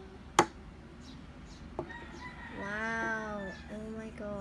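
A sharp click about half a second in and a fainter click near two seconds, as the brass wax-seal stamp comes off the hardened wax and is set down. About three seconds in there is a drawn-out call, about a second long, that rises and falls in pitch.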